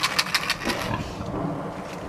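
A pig making sounds at close range: a rapid run of short clicks in the first half second, then low grunting.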